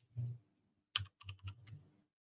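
Typing on a computer keyboard: a soft thump just after the start, then a quick run of keystrokes from about a second in.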